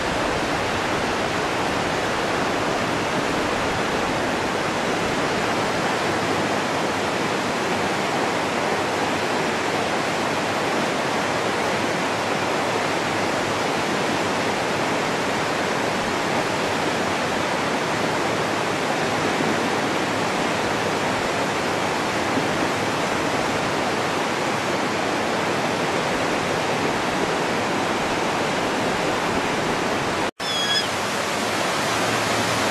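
Steady rushing of river water, an even loud hiss with no change.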